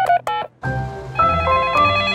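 Cartoon mobile phone keypad beeps as a number is dialled, which cut off about half a second in. After a brief silence, a short melody of steady electronic tones begins.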